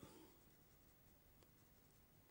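Near silence, with the faint sound of a fine paintbrush stroking wet watercolour paper.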